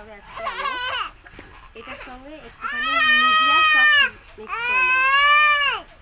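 A baby crying: a short wavering cry near the start, then two long, loud wails of about a second and a half each.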